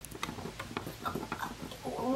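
Small plastic toy figure tapped along a wooden tabletop as it is hopped forward by hand, a quick, uneven run of light taps.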